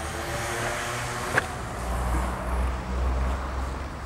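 A car engine running close by, its low rumble swelling about two seconds in, with a single sharp click about a second and a half in.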